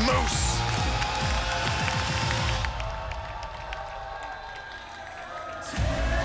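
Wrestling entrance music playing over an arena crowd cheering. A little under halfway the music thins and drops in level, then comes back full near the end.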